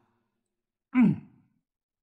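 A man's short sigh, falling in pitch, about a second in; silence around it.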